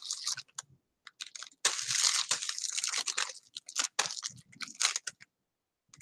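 Plastic bag crinkling and rustling as a bag-covered hand rubs over short waved hair, in a run of uneven crackly strokes that stops about five seconds in.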